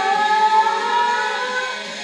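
A woman singing karaoke into a microphone, holding one long note that rises slightly in pitch and fades near the end.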